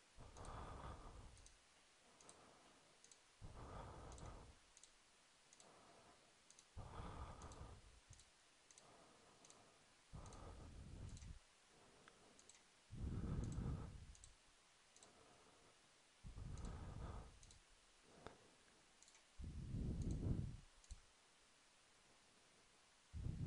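Faint computer mouse clicks, many in a row, as points are picked one at a time. A person's breathing close to the microphone is the louder sound, a soft breath about every three seconds.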